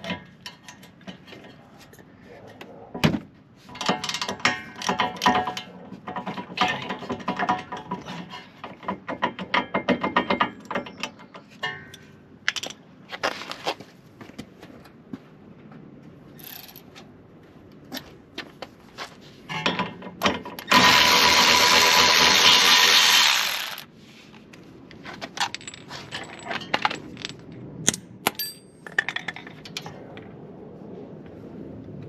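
Hand ratchet clicking and tools clinking on steel as the rear brake caliper carrier bolts are worked loose, with scattered knocks. About 21 seconds in comes a loud, steady rushing noise lasting about three seconds.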